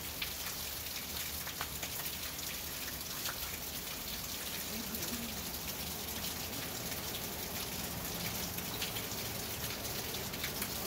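Steady rain falling on a roof, a continuous hiss dotted with many small ticks of single drops, over a low steady hum.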